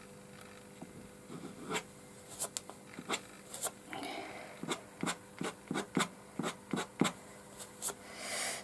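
Edge of a piece of plastic credit card scraping short strokes across damp watercolour paper, lifting paint out to flick in fur texture. A series of quick strokes, a few in the first half and then coming faster and closer together in the second half.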